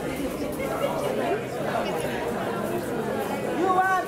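Several people talking at once in a low, overlapping chatter. Near the end a held, sung voice starts.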